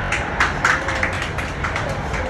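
BART Fleet of the Future train car running, a steady low rumble heard from inside the car, with a scatter of sharp taps and knocks over it in the first second or so.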